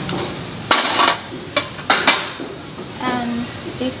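Metal serving tongs clinking against stainless steel buffet trays and a plate while food is picked up. There are about five sharp clinks in the first two seconds, then a brief voice near the end.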